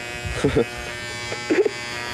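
Corded electric hair clippers buzzing steadily while cutting hair, with two short vocal sounds, about half a second and a second and a half in.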